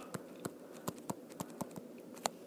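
Light, irregular clicks and taps of a pen stylus against a tablet screen while handwriting, about seven in two seconds.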